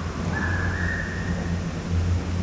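Steady low hum of a tubing run's conveyor-belt lift carrying riders and tubes through a corrugated tunnel. A single high note is whistled and held for about a second in the middle.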